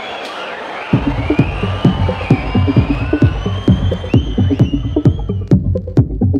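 Live techno: after about a second of crowd noise, a heavy four-on-the-floor kick and bass beat comes in and runs steadily, with gliding synth tones above it. Near the end the upper sounds fall away, leaving the beat with sharp hi-hat ticks.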